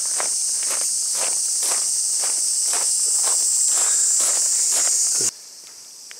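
Loud, steady high-pitched drone of insects in the trees, with footsteps on grass about twice a second. Both cut off suddenly about five seconds in, leaving a much quieter background.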